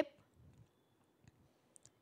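Near silence with a couple of faint, short clicks close together shortly before the end.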